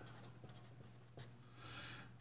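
Faint scratching of a pen writing in short strokes, with a steady low hum underneath.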